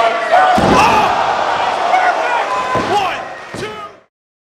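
Heavy slams in a wrestling ring: a big thud about half a second in and two more near the end, over shouting voices. The sound fades out just before the end.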